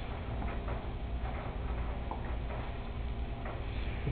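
Room tone in a pause between sentences: a low steady hum with faint, irregular small clicks and taps scattered through it.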